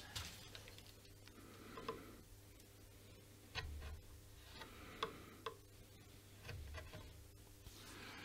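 Faint, scattered clicks and light scrapes of a sharp blade trimming a guitar neck's binding flush with the edge, with a couple of soft knocks from handling the work.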